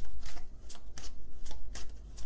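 A deck of tarot cards being shuffled by hand: a quick run of short papery strokes, about five a second.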